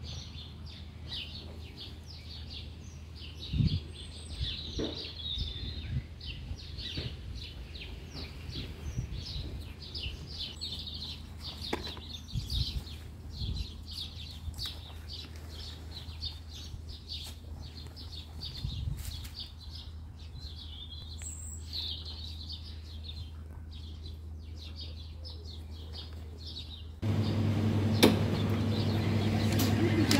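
Small birds chirping outdoors, a dense run of short, high chirps over a faint low background hum. About three seconds before the end the sound cuts abruptly to a louder steady hum with a sharp click.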